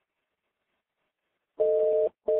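Near silence, then about one and a half seconds in a steady two-note telephone tone sounds on the phone line, the tone pair of a North American busy signal.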